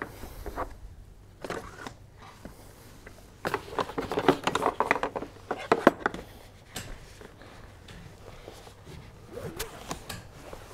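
Seat-belt webbing being threaded through the back of a plastic child car seat and pulled: rustling and scraping with a cluster of light clicks about three and a half to six seconds in.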